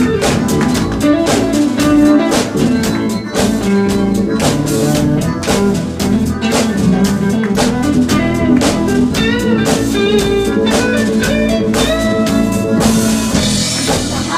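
A live band playing an instrumental passage: a drum kit keeping a steady beat under electric guitars.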